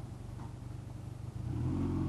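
Motorcycle engine idling with a fast, even low pulse, then revved up and louder about one and a half seconds in.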